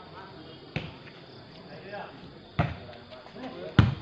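A volleyball being struck by hand three times during a rally. The last hit is the loudest, and players' voices are faint in the background.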